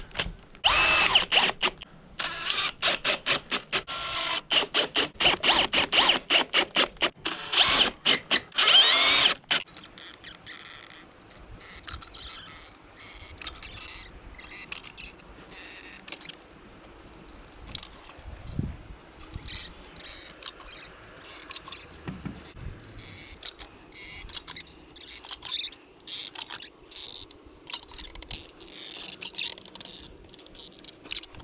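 Cordless drill-driver running in repeated short bursts for about the first ten seconds, driving screws into the vent's metal screen frame. After that come quieter scattered clicks and scrapes from a caulking gun being squeezed along the frame.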